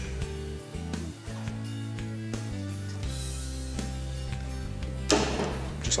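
Background music: an instrumental track with steady bass notes and chords that change every second or so.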